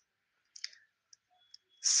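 Near silence in a pause of a voice-over, broken by a few faint short clicks, then a man's voice starts again near the end.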